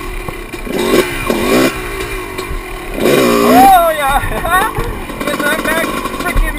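Two-stroke dirt bike engine revving in repeated bursts, its pitch rising and falling, as the rider pulls the front end up into a wheelie. The loudest rev comes about halfway through.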